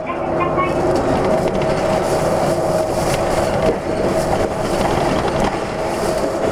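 Cabin running noise of a 2013 Hino Blue Ribbon II (QPG-KV234N3) diesel city bus under way: a steady engine and drivetrain hum with two held tones, over road and tyre noise.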